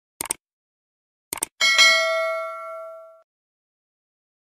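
Mouse-click sound effects: a quick double click, another click about a second later, then a bright bell-like notification ding that rings and fades over about a second and a half.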